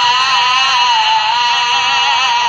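Music from an old radio recording of a Saraiki nauha: a high melodic line held with a slight waver and no distinct words, its top end cut off like an old broadcast.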